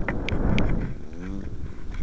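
Wind buffeting the tiny microphone of a keychain camera, with a few sharp handling clicks and rustle. A short pitched call sounds about a second in.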